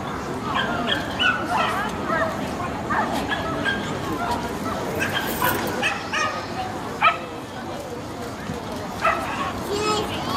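Dogs barking and yipping repeatedly over background crowd chatter, with one sharp knock about seven seconds in.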